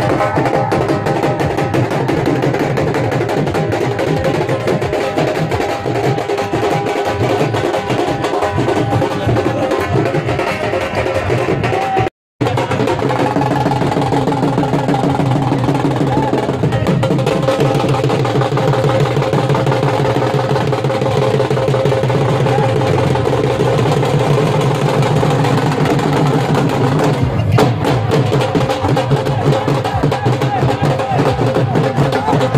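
Several dhols beaten together in a fast, driving rhythm, with steady held tones over the drumming. The sound cuts out for a moment about twelve seconds in, then the drumming resumes.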